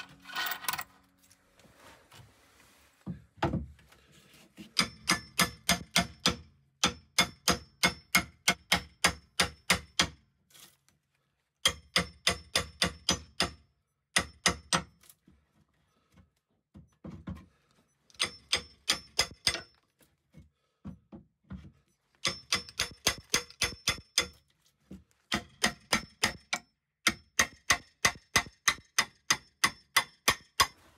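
A hammer striking a steel pry bar in quick runs of ringing metal blows, about four a second, with short pauses between runs. The bar is being driven in under a wooden cabinet base to pry it loose.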